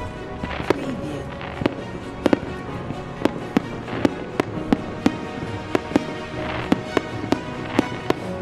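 Fireworks salute: an irregular string of sharp bangs, two or three a second, with a burst of crackling about six and a half seconds in, over steady background music.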